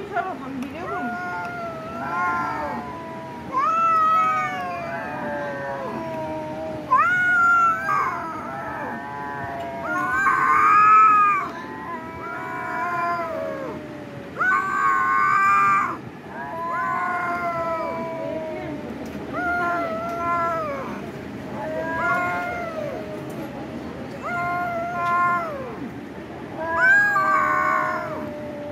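Cat meowing over and over, drawn-out meows about a second long coming every second or two, a few of them louder and more strained.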